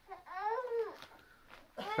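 A young girl's short high-pitched wordless whine, rising then falling in pitch, as she strains to hold a Twister position.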